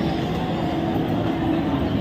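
Steady rumbling din of a busy indoor ice rink, with skate blades scraping on the ice under a low, even hum.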